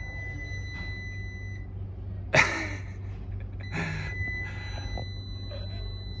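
Fieldpiece clamp meter's continuity beeper sounding a steady high tone with its leads across L1 and earth, the sign of a low-resistance path from L1 to earth. The tone cuts out about one and a half seconds in and comes back near four seconds, an intermittent reading. A single sharp click a little over two seconds in, over a low steady hum.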